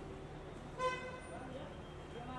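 A single short horn toot about a second in, over faint crowd voices and a low background hum.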